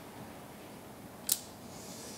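One short, sharp click about 1.3 seconds in, against faint room tone: a wooden shogi piece, a knight dropped from the captured-piece stand, set down on the wooden board.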